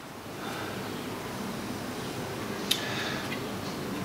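Steady low workshop background noise with one light click a little after halfway, from a small steel square and scriber being handled against a plastic block on a steel bench.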